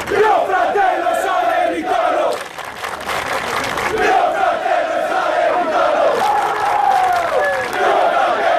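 A large crowd of football ultras chanting loudly together in unison. The chant dips briefly about two and a half seconds in, then swells back up.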